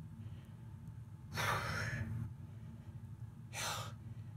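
A man breathing hard with the strain of bench dips: two forceful breaths, a longer one about a second and a half in and a shorter one near the end, over a steady low hum.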